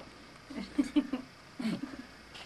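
A person's voice: a few short, quiet syllables about halfway through and again near the end.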